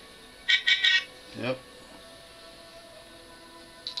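The small speaker of a musical greeting card's sound chip sounds a quick run of a few loud, high-pitched notes lasting about half a second when a rewired button-cell battery pack is connected for a test: the rewired pack powers the card.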